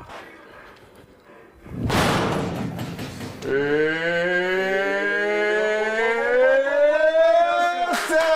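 A punch lands on the bag of an arcade boxing machine about two seconds in, with a loud burst of noise. It is followed by a long, slowly rising tone as the machine's score counts up.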